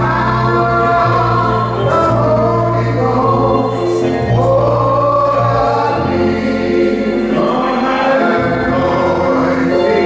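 Gospel singing by several voices at microphones, long held notes changing every second or two over a steady low accompaniment.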